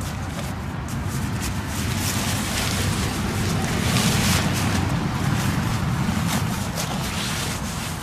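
Steady rumble and hiss of heavy road traffic from a nearby major road, swelling a little around the middle, with crackly rustling of nylon fabric as a bivy sack is handled.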